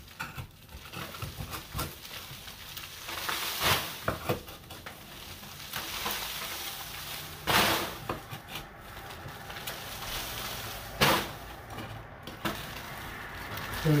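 Horsehair plaster being scraped and cut by hand, a steady scratchy rasp with crumbling plaster and three sharper knocks, about 4, 7 and 11 seconds in.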